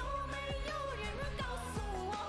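A woman singing a Chinese pop song in Mandarin over a DJ-style dance backing track, with a steady beat of about two drum hits a second.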